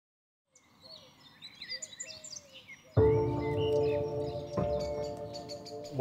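Birds chirping and calling. About halfway through, music comes in suddenly with a sustained chord, and a second chord is struck about a second and a half later.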